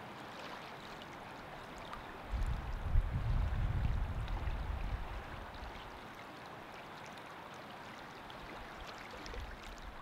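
Steady running water, with a low rumble that comes in about two seconds in and fades out by about five seconds.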